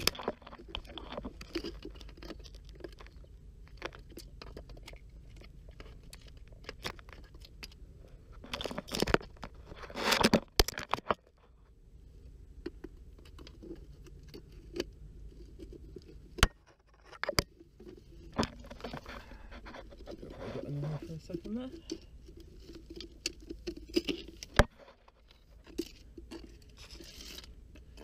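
A metal rod probing and scraping in a rock crevice, ticking and crunching against rock, shells and gravel while sand and shell are scraped out to get at a crab hiding at the back. The loudest scraping comes about ten seconds in, with single sharp clicks later on.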